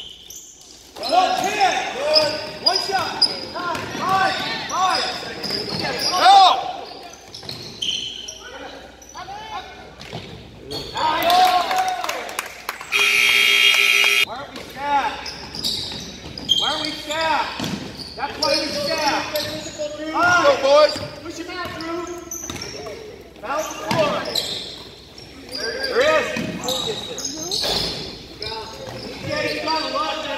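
A basketball bouncing on a gym's hardwood floor among players' and spectators' voices in a large echoing hall. About 13 seconds in, a steady pitched signal sounds for over a second.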